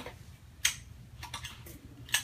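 A few light clicks and taps of things being handled, over a faint low hum. The sharpest click comes a little over half a second in, and fainter ticks follow about a second later.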